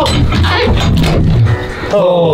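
Scuffling and knocks as someone scrambles in through a bunker doorway and the door is pulled shut, over background music.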